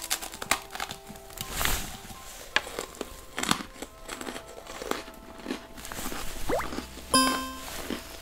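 Dry, crackly crunching of a person biting and chewing a freeze-dried Neapolitan astronaut ice cream bar, in a scattered run of short crunches, over quiet background music.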